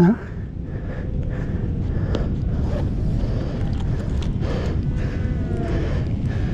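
Steady low wind rumble on a body-worn camera's microphone, with rustling of gloves and clothing. A few faint higher calls come about four to five seconds in.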